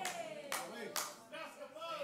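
Three sharp hand claps about half a second apart, with a faint voice trailing under them.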